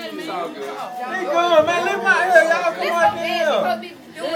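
Only speech: several people talking over one another.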